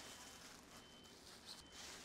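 Near silence: room tone with faint rustling of a plastic isolation gown being unfolded, and a faint steady high-pitched whine.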